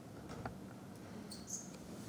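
Hushed room of standing people keeping a moment of silence: faint room tone with one soft click about half a second in and a brief high squeak about a second and a half in.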